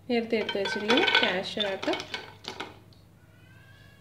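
Cashew nuts and raisins tipped from a small steel bowl clattering into a nonstick frying pan, loudest about a second in, then settling.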